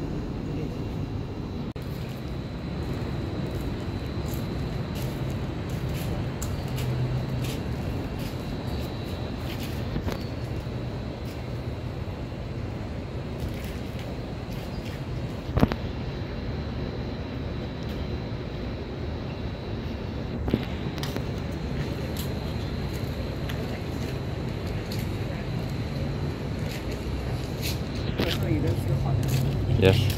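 Steady low background rumble with indistinct voices, broken by two short knocks, one about halfway through and one about two-thirds in.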